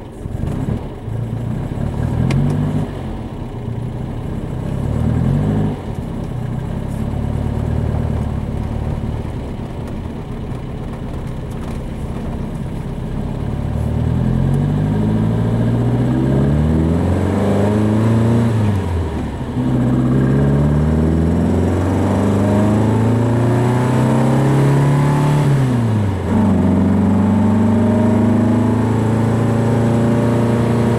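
1966 VW Beetle engine through a dual glass-pack exhaust, first running at low revs. From about halfway it accelerates through the gears, its note climbing and then dropping at two gear shifts. Near the end it holds a steady cruise.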